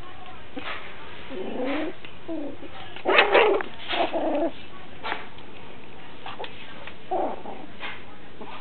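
Seven-week-old Pomeranian puppies playing, giving a handful of short yips and squeals, with the loudest cluster about three seconds in and another near the end.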